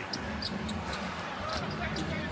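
Live basketball game sound in an arena: a steady crowd murmur, with the ball and players' shoes on the hardwood court heard as a few short, high blips.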